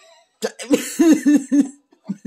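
A person coughing: a quick run of about four harsh coughs, starting about half a second in.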